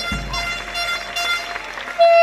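Crowd noise from the audience, an even wash of sound with a low rumble in the first half second.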